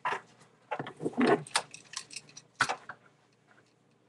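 A few short knocks and rustles from a plastic gallon milk jug being handled and carried past, the loudest about a second in and again near three seconds. The sounds stop in the last second.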